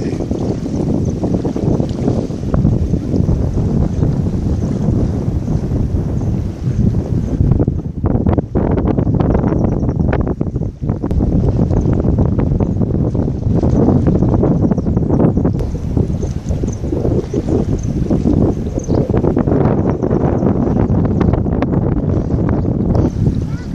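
Wind buffeting the microphone: a loud, uneven low rumble that gusts and eases.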